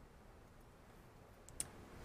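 Near silence: room tone, with a couple of faint clicks about one and a half seconds in.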